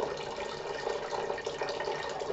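A thin stream of water pouring from a rubber drain tube and splashing steadily into a glass tank of water about a metre below.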